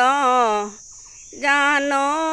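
A woman singing an Assamese biya geet (wedding song) unaccompanied, holding long wavering notes, with a breath pause about a second in. A steady high insect trill runs underneath.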